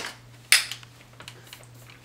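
Hard plastic click of the long wand snapping into a Dyson DC59 cordless handheld vacuum: one sharp snap about half a second in, after a lighter click at the very start. The vacuum motor is not running.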